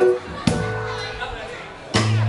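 Live jazz band with horns, keys, electric bass and drums playing a stop-time break: a sharp ensemble hit at the start and another about half a second in, then the sound dies away with voices audible in the gap, and the full band comes back in with a loud hit at the end.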